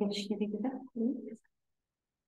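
A person's voice speaking briefly, stopping about a second and a half in, after which the sound cuts to dead silence, as a video call's noise gate does.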